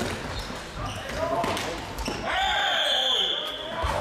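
Floorball play in a sports hall: players shouting and sharp knocks of sticks and ball, then a referee's whistle blown as one steady, high blast of about a second and a half, starting a little past halfway and stopping play.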